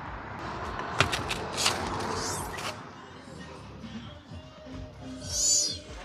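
Street traffic noise on a town road for the first half or so. After that it turns quieter, with faint background music and a short high squeak near the end.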